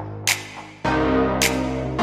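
Background music: an electronic track with sustained chords and light percussive hits. It thins out briefly and comes back in full just under a second in.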